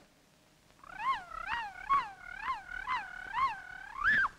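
Slowed-down tape playback of an alien plant's ultrasonic cries, a sound effect: a run of about seven yelps, each rising and falling in pitch, roughly two a second, ending on a held tone.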